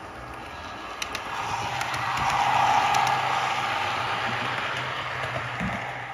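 N gauge model train running along the layout's track, its motor and wheels giving a steady rumble with a low hum. It swells to its loudest about halfway through, then eases off.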